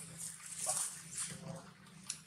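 Newborn long-tailed macaque giving a couple of short, soft whimpers.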